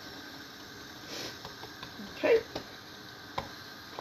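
Soft handling sounds of a ball of yeasted naan dough being shaped and pressed flat by hand on a floured stone counter, with a few light clicks, the sharpest about three and a half seconds in.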